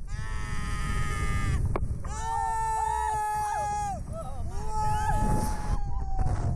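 Women screaming on a Slingshot reverse-bungee ride: three long, high, held screams one after another, over a low rumble.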